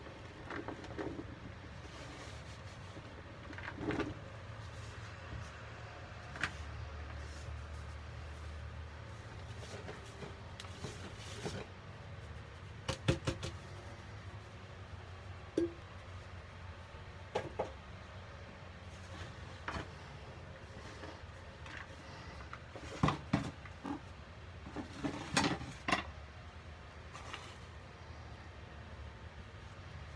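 Gloved hands working a crumbly powder mixture in a bowl: soft scraping and crumbling, with a few sharper clicks and knocks, most of them around the middle and again about two-thirds through, over a low steady hum.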